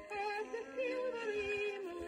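A 1910 recording of a woman singing a popular song over instrumental accompaniment, her notes held and bending in pitch.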